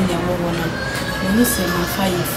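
A woman's voice talking, the pitch rising and falling through drawn-out syllables.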